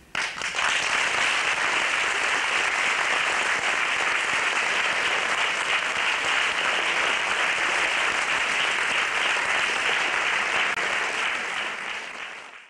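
Audience applause that breaks out at once as the song ends, then stays steady, easing slightly near the end.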